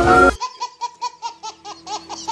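A baby laughing hard: a quick run of short, repeated laughs, several a second. Music cuts off just before the laughter starts.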